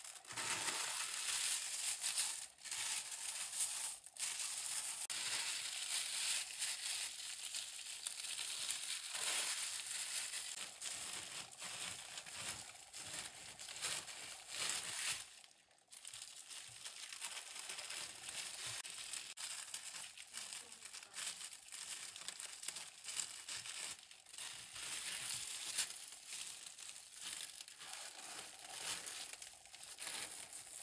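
Steady crinkling and rustling of material being handled close to the microphone, with a brief pause about halfway through.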